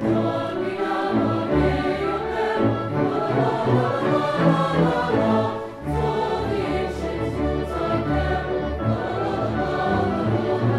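A school symphony orchestra playing a Christmas carol medley, with a choir singing along. The music eases briefly at a phrase break about six seconds in.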